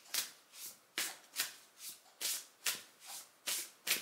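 A deck of oracle cards being shuffled by hand, the cards swishing against each other in a steady rhythm of about two to three strokes a second.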